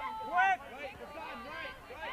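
Several voices calling and shouting across an open soccer field, too far off or overlapping to make out words, with two loud calls at the start and about half a second in.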